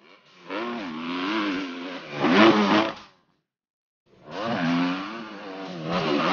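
Dirt bike engine revving hard, its pitch rising and falling with the throttle and loudest as it reaches a jump. Heard twice, in two short runs with a sudden break of silence between them.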